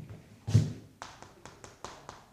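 Chalk striking a chalkboard while writing: one firmer knock about half a second in, then a quick run of light, sharp taps as characters are written.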